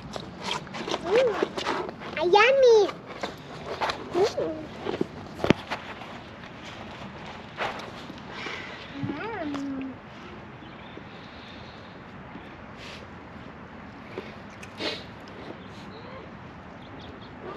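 Short wordless vocal sounds that slide up and down in pitch, several within the first ten seconds, with a single sharp click about five and a half seconds in.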